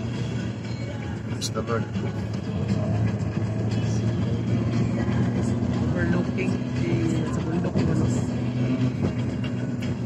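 Steady low drone of a car's engine and road noise heard from inside the cabin while driving, with faint voices in the background.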